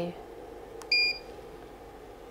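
KX5600 portable ultrasound machine giving a single short electronic beep about a second in, just after the faint click of a keypad key: the machine's key-press confirmation as the Review key is pressed.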